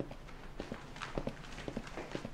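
Footsteps on a hard floor: quick, light taps, several a second, as a person walks away.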